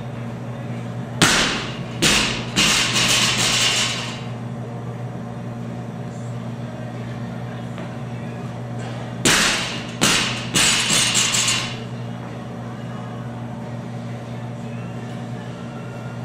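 A loaded 135 lb barbell dropped from overhead onto the gym floor after a one-handed snatch, twice. Each drop lands with a loud strike, bounces about a second later, then the plates rattle and clank for about a second before settling.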